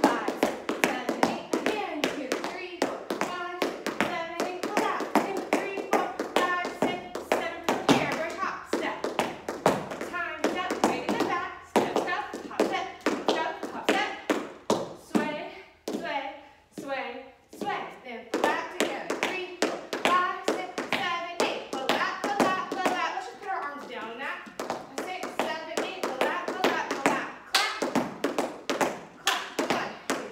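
Tap shoes striking a studio floor in quick, rhythmic runs of taps as a tap step sequence is danced, with a woman's voice over them for much of the time.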